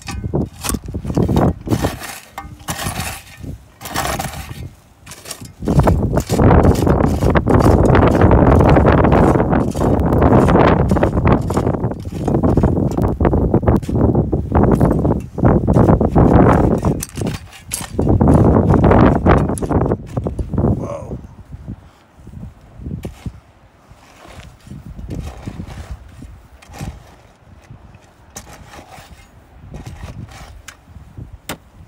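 Digging in loose shale: knocks and clinks of a hand tool and rock chips. A long spell of loud, low, pulsing noise runs through the middle, and the clicking returns near the end.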